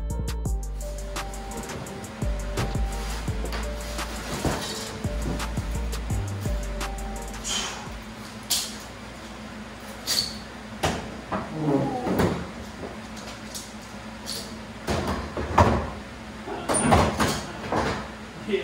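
Background music with a heavy bass for the first six or seven seconds, then a run of clanks, knocks and rattles as a sheet-metal car hood is handled and set onto a car's front end, the loudest knocks in the second half.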